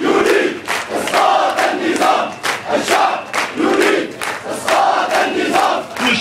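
A large crowd of protesters chanting a slogan in unison, in loud rhythmic pulses, with hand clapping keeping the beat.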